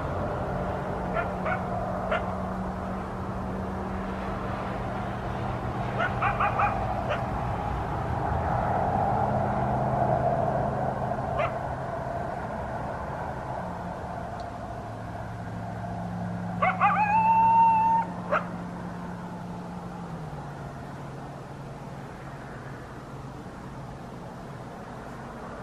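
Coyote calls: scattered short yips, then one longer howl about two-thirds of the way through that rises and then holds steady, over a steady low hum.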